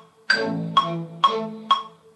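Ableton Live playing back a looped bar of a progressive-house arrangement. A sustained synth chord sounds under the metronome, which ticks four even beats to the bar with a brighter first beat. The bar restarts about every two seconds.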